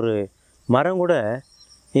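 Steady high-pitched chirring of crickets, with a man speaking Tamil in two short phrases over it.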